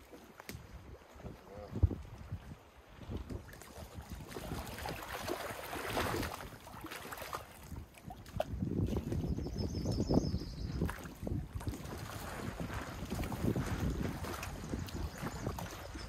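Wind blowing on the microphone in uneven gusts, with lake water lapping at the shore; quiet at first, louder after the first few seconds.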